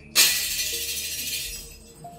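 A sudden loud crash-like sound effect, a hissing shatter that fades away over about a second and a half, over sustained background music.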